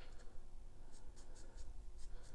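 Faint, irregular light scratches and ticks from gloved hands handling and tilting a wet acrylic-pour canvas.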